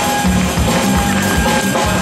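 Live band music: a balafon played with mallets over a drum kit and bass, at a steady groove.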